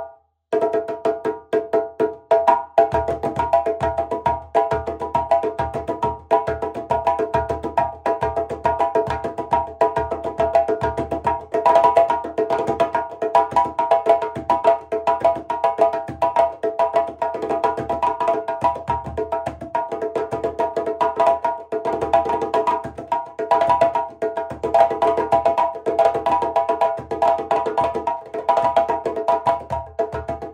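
Two Guinea djembes played together by hand in a fast, continuous rhythm, starting about half a second in. One has a fully cranked cow skin head, the other a thick goat skin head.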